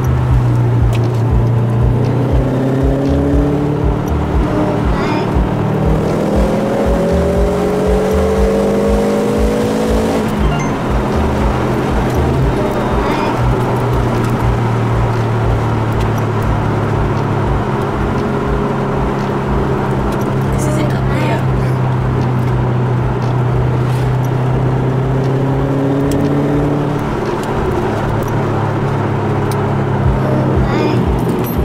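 Engine drone and road noise inside a Subaru Impreza WR1's cabin as it drives at speed, its turbocharged flat-four note rising in pitch during acceleration in the first ten seconds and again near the end.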